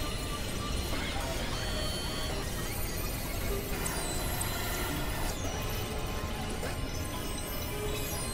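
Experimental electronic noise music made on synthesizers: a dense, steady drone with a constant low rumble, scattered short held tones and a few brief pitch glides.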